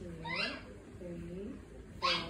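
A woman's soft voice making two drawn-out, wavering sounds about a second apart, the first the louder.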